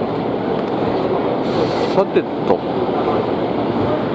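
Electric commuter train moving alongside the station platform, a steady rumble with voices mixed in and a short hiss about a second and a half in.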